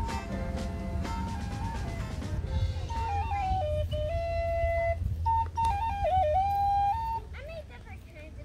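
A street musician playing a slow melody on a wind instrument, the notes stepping up and down in pitch over a steady low hum. The playing stops about seven seconds in.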